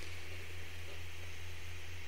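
Room tone of a speech recording: a steady low hum with faint hiss.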